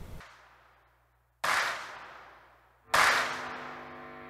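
Two sudden, sharp sound-effect hits of an edited logo transition, about a second and a half apart, each fading away over about a second; the second carries a held chord as music begins.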